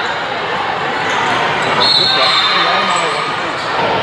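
A volleyball bouncing on a gym floor amid voices in a large, echoing hall, with a brief high squeak about two seconds in.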